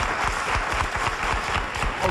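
Studio audience applauding: steady, dense clapping.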